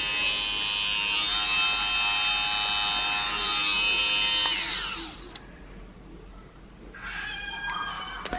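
Xiaomi battery-powered lint remover (fabric shaver) running with a steady high whine as it is pressed over sofa upholstery. About five seconds in it is switched off and the whine falls in pitch as the motor and blades spin down.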